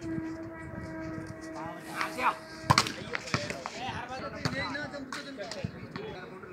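A volleyball being hit in play: sharp slaps of hands on the ball, five or so, the loudest about three seconds in, among players' shouts. A steady hum runs under the first half and stops about three seconds in.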